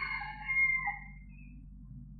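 A bird call, one drawn-out call with a few steady tones that drops in pitch and fades about a second in, over the steady low hum of the old recording.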